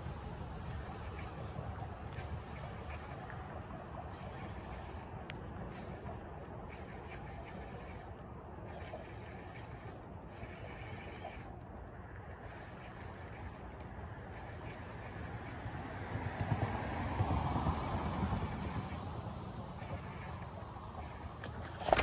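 Pond-bank outdoor ambience: a steady low rumble, a high buzz that comes and goes in spells, and two short falling bird chirps, about half a second and six seconds in. A louder rustling swell builds near the end, and a sudden bump comes right at the end as the rod and camera jerk.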